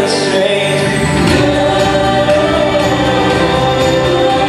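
Live worship-style band music with a male lead voice and two female voices singing in harmony over acoustic guitar. The band's low end and drums fill in about a second in, under long held sung notes.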